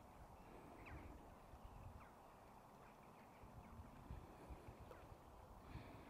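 Near silence: quiet outdoor ambience with a faint low rumble and a few faint, brief bird chirps spaced a second or two apart.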